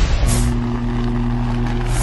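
Logo-intro sound effects: a whoosh, then a steady low hum of a few held tones, and a second whoosh near the end before it cuts off.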